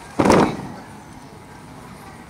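A single stamp of a boot on the ground in a military drill movement, sharp and short, about a quarter second in.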